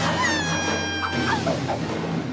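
Several cartoon children's voices screaming as they fall, in long held cries that sink slightly in pitch, then trail off into lower wavering yells, over background music.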